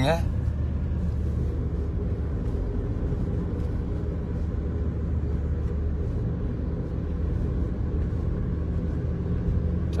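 Steady low drone of a car heard from inside its cabin while driving: engine and road noise with a low hum that stays even.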